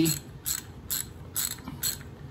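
Socket ratchet clicking as it is worked back and forth in four short bursts, about two a second, snugging the clutch spring bolts by hand.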